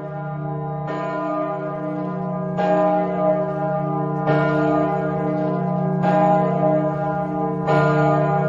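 Church bells ringing: a new pealing stroke roughly every two seconds, each ringing on over a steady low hum as the next one comes in.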